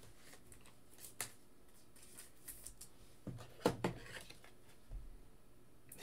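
Faint, scattered clicks and light rustles of trading cards being handled and set down on a tabletop, with a small cluster of them a little past the middle.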